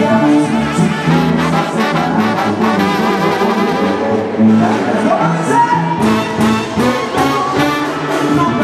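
A Mexican banda playing live, led by its brass section of trumpets and trombones over a bass line and drums, with drum strikes coming thicker near the end.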